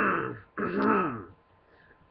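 A person's voice making two drawn-out wordless vocal sounds, each falling in pitch. The second ends a little over a second in.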